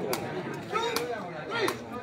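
Three sharp cracks less than a second apart, a sepak takraw ball being kicked, over crowd chatter and shouting voices.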